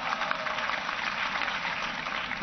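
An audience applauding: dense, steady clapping.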